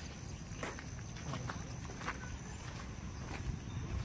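Footsteps crunching on a gravel path, a scatter of short crunches over a low wind rumble on the microphone.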